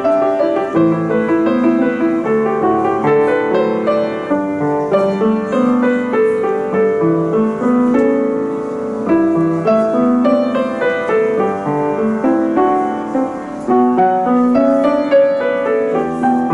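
Solo piano played on a Cristofori grand: a steady stream of notes, a melody over sustained chords.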